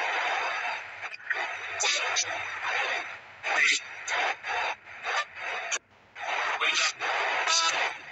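Spirit box sweeping through radio stations: hissing static chopped into short bursts, with brief clipped fragments of broadcast voices and a few short gaps.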